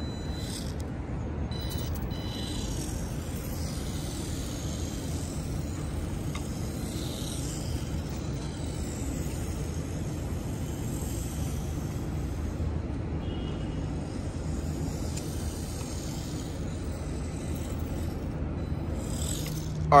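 Steady low outdoor rumble of city traffic, with the faint high whine of a 1:28 scale WLtoys K989 RC car's small brushed electric motor coming and going as it drives.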